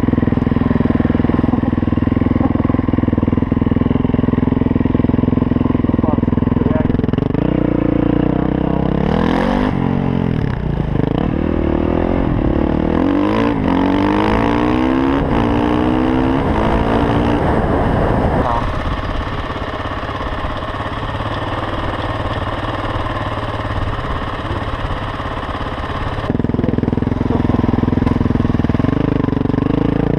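Supermoto motorcycle engine, a Yamaha WR450F single, running steadily at first, then pulling away with rising pitch through several gear changes from about eight seconds in, easing off for a stretch, and picking up again near the end.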